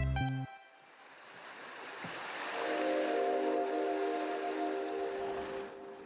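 Background music whose beat stops about half a second in, followed by a swelling rush of noise and, from about two and a half seconds in, a sustained chord of several steady tones.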